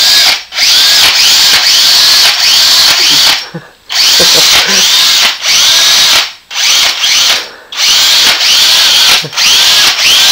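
Cordless power drill run at full speed in long bursts, its trigger let go briefly several times.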